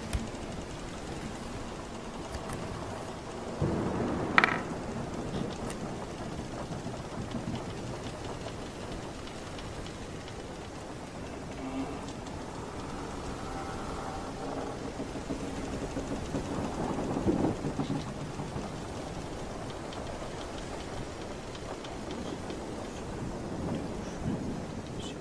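Layered pirate-ship sea ambience: a steady rushing wash of sea and weather noise, with a louder rumbling surge about four seconds in and another around two-thirds of the way through. Faint drawn-out tones sound through the middle.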